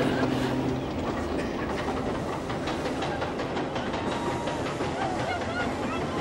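Roller coaster car rattling and clattering along its track, with a steady low hum that stops about a second in.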